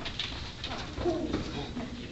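A woman's voice giving a drawn-out "good" of praise to a dog, its pitch gliding up and down.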